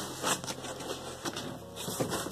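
A cardboard shipping box being handled and its flaps opened: irregular scraping and rustling of cardboard with small clicks.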